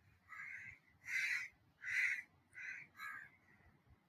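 A bird calling: five short calls in a row, about two-thirds of a second apart.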